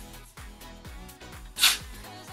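One short hiss of got2b Glued hair spray from an aerosol can, about one and a half seconds in, sprayed onto a lace wig's hairline to hold it down.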